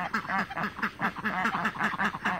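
Domestic ducks quacking: a quick, steady run of short, low quacks, several a second.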